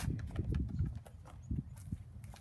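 Irregular footsteps and light knocks on a concrete patio, thinning out about a second in.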